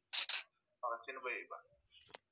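Speech only: a short hiss-like breath or sibilant, then about a second of quieter talking from a voice on the livestream.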